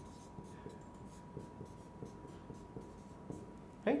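Marker pen writing on a whiteboard: a run of short, faint scratching strokes as an equation line is written out.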